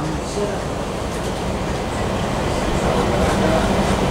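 Steady mechanical rumble with a low hum, growing a little louder.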